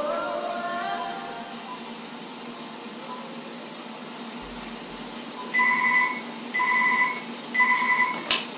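Uniden desk telephone ringing with an electronic trill: three identical rings about a second apart, starting a little past the middle. A fading music tail is heard at the start.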